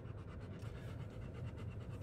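A dog panting steadily inside a car cabin, over a low, steady hum from the idling car.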